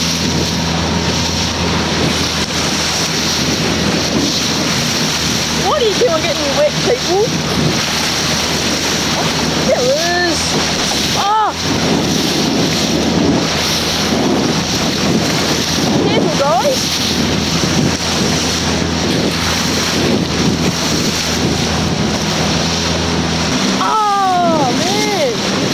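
Motorboat engine running steadily under a constant rush of water along the hull and wind on the microphone. Several short rising-and-falling "oh" exclamations from people aboard come and go over it.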